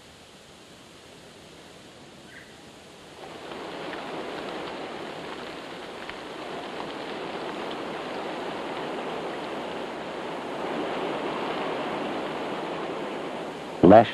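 Faint hiss, then about three seconds in a steady rush of heavy driving rain sets in and swells slightly later on.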